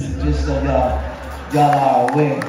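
A man speaking over a church microphone, with a low rumble under the first second and a half.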